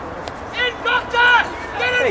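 People shouting during a field hockey game: a few short, high-pitched calls in quick succession, over open-air background noise.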